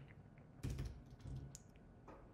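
A few soft keystrokes on a computer keyboard as a number is typed in.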